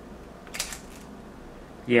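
Quiet room tone with one brief, soft rustle about half a second in, hands shifting on a Leica M10 camera body.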